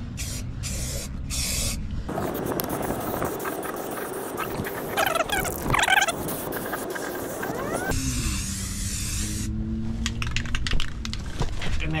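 Aerosol spray-paint can spraying primer onto a van's underbody frame, in short on-off bursts at the start and end and a longer continuous stretch in the middle, with wind blowing across the microphone.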